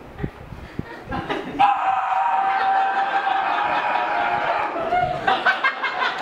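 A voice holds one long, steady cry for almost four seconds, starting about a second and a half in. Audience laughter and scattered claps follow near the end.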